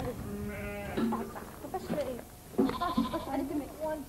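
A mixed flock of sheep and goats bleating: one long, steady bleat at the start, then more calls a couple of seconds later.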